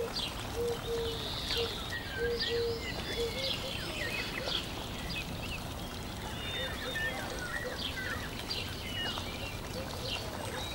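Birds chirping in the background: short high calls scattered throughout, with a lower note repeated several times in the first few seconds, over a steady hiss.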